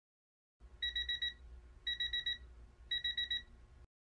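Electronic alarm beeper sounding three quick bursts of about five high beeps each, the bursts about a second apart, over a low hum; it cuts off suddenly near the end.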